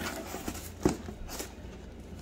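Handling noise from a cardboard shipping box being picked up off a kitchen counter, with two short knocks about half a second apart near the middle.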